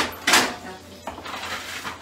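Metal ladle against a cooking pot and bowl as soup is served: a sharp clink at the start, then a short loud scrape, then lighter clatter.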